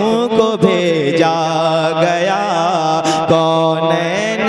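A male voice singing a naat in long, drawn-out notes that waver and glide, over a steady low drone.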